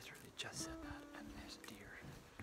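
A man whispering, over soft background music of held notes.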